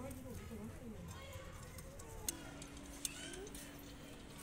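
Metal tongs working charcoal in a clay bowl, with two sharp clicks about two and three seconds in, under faint background voices.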